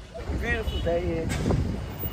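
Low steady vehicle rumble with wind on the microphone, heard from the open bed of a pickup truck, with faint voices in the background.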